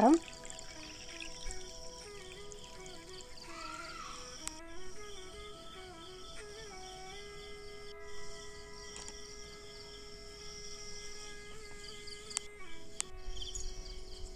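Soft instrumental background music, a slow melody over long held notes, with a high, pulsing insect chirring that comes and goes in stretches. There are a few faint clicks along the way.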